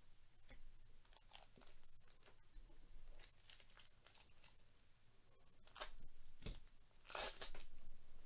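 A 2022 Bowman Chrome hobby pack's wrapper being torn open and crinkled by hand, with the loudest tearing about six and seven seconds in. Quieter rustles earlier come from a stack of trading cards being handled.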